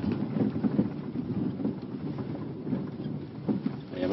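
A small car rolling slowly towards the microphone over an unpaved gravel track, its engine running low under tyre noise, with some wind on the microphone.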